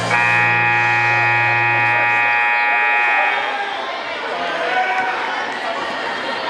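Gymnasium scoreboard buzzer sounding one steady, harsh tone for about three seconds and then cutting off, followed by the chatter and noise of a crowded gym.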